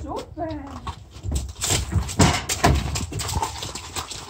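Mule's hooves knocking and clattering on a horse trailer's loading ramp as it steps back off the ramp, a run of uneven knocks through the middle. A short gliding voice is heard at the very start.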